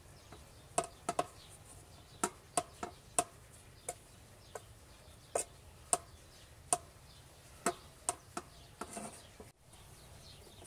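Hands patting and pressing a ball of pizza dough on an upturned aluminium tray: a string of sharp, unevenly spaced pats.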